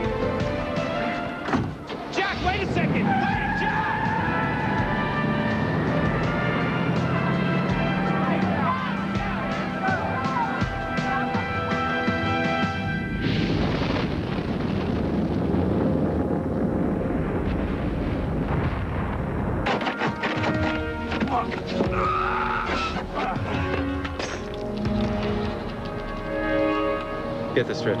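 Film soundtrack: a dramatic music score with sound effects. Near the middle the music drops out for about six seconds of steady noise, then returns.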